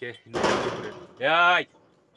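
A rough rattling clatter, like a pen gate being shaken, for most of a second, then a goat bleats once: a short, quavering call that rises and falls.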